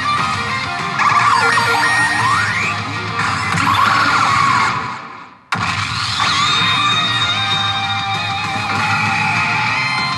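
Pachinko machine game soundtrack: guitar-driven music with rising and falling sweeping effect tones. It fades away about five seconds in and then comes back suddenly as the machine's screen effect changes.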